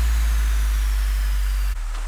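Electronic-music intro effects from sample-pack FX: a deep sub-bass impact tail held under a hiss of white-noise downlifter, with a thin high tone falling slowly. The sub-bass drops in level near the end.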